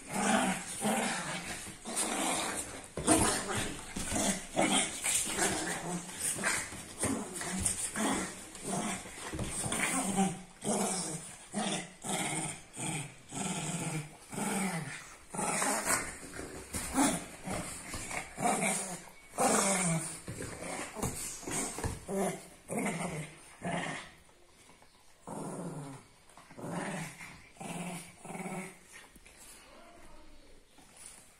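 A Shih Tzu and a French Bulldog growling as they wrestle in play: a run of short growls, one or two a second, that turn quieter for the last several seconds.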